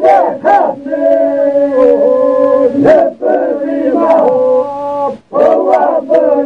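Men's group singing an Albanian Lab polyphonic song: several male voices in long phrases over a steadily held drone, with short breaths between phrases about three and five seconds in.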